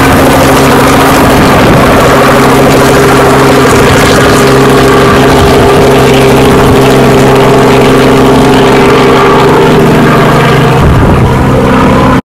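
Light helicopter in flight, its engine and rotor running loud and steady.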